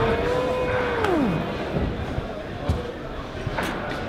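A climber's long wordless shout after falling off a boulder problem: held at one pitch for about a second, then sliding down and dying away. After it, only a few light knocks.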